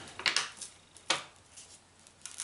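A sheet of paper rustling as it is handled and peeled up from a plastic disc: two short crinkles, about a quarter second in and about a second in, then quiet handling.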